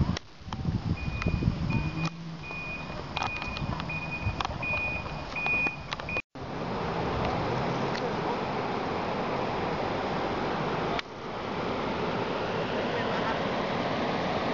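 A short high beep repeats about twice a second for the first six seconds over background noise. After a brief dropout comes a steady rushing noise that grows fuller about eleven seconds in.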